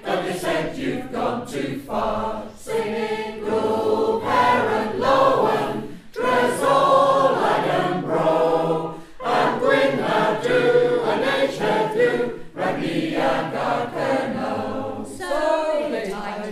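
A choir singing a verse of a folk song in English, line after line, with brief pauses for breath between lines.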